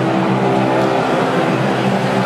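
Loud, distorted live rock concert sound recorded from the crowd: several held low tones over a dense, steady wash of noise.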